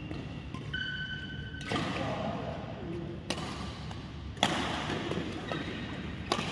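Badminton play on a synthetic court mat: short high shoe squeaks near the start, then two sharp racket strikes on the shuttlecock about a second apart, the second the loudest.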